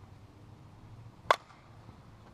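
A 2015 Miken Freak 52 ASA composite slowpitch bat hitting a 44/375 softball: one sharp crack of contact a little past halfway. The bat is still stiff and not yet broken in, with about 200 swings on it.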